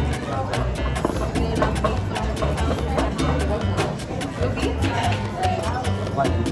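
Background music with a steady beat and a strong bass line.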